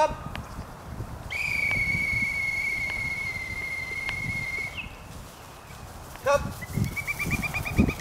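Dog-training whistle: one long steady blast of about three and a half seconds, then near the end a trilled, warbling blast that calls the retriever puppy back in with the dummy.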